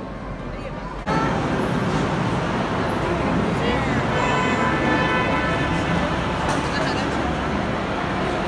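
Steady rumbling noise of Space Mountain's rocket ride cars rolling through the loading station, mixed with crowd chatter; it starts suddenly about a second in.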